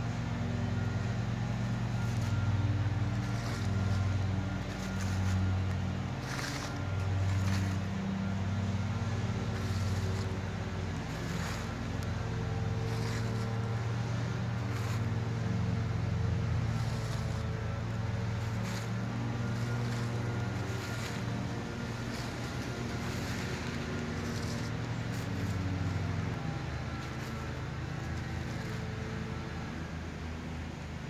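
A steady low motor drone that swells and fades every second or two, with short crackles scattered over it.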